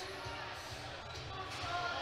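Background music playing low in a large hall, with a faint crowd murmur underneath.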